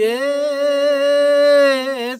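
A man singing a Mongolian folk song unaccompanied, holding one long note that rises slightly at the start and wavers a little.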